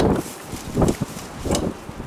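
A combination wrench working a bolt on an outboard jet unit's intake housing: a few short metal-and-plastic knocks and clicks, spread through the two seconds.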